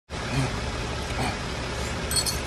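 Steady low rumble and hiss of background noise, with two brief low vocal sounds from a man getting into push-ups.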